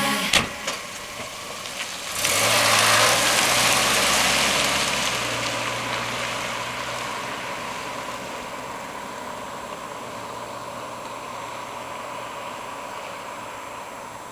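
A short thump, then a small sedan's engine revving as the car pulls away, its sound fading slowly as it drives off.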